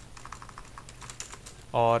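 Computer keyboard typing: a quick run of faint keystrokes as a word is typed and a typo is corrected.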